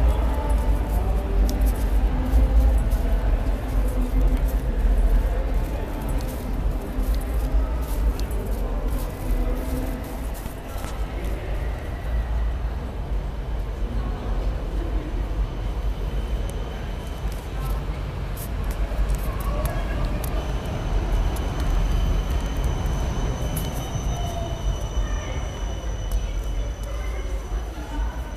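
City street sound along a tram line: a tram running past, with passers-by's voices and a heavy low rumble on the microphone. A steady high whine comes in during the second half and fades before the end.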